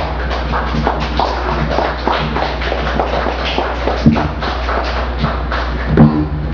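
Experimental noise performance: a steady low electronic hum under dense, irregular clicks and crackles, about four a second, with one loud thump about four seconds in.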